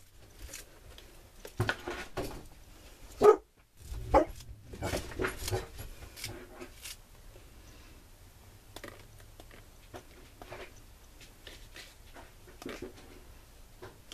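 A dog gives several short barks and whimpers in the first half, the loudest about three seconds in. After that come only faint scattered taps and clicks as watered-down gesso is splattered from a brush onto paper.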